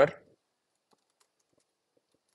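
A few faint, scattered keystrokes on a laptop keyboard.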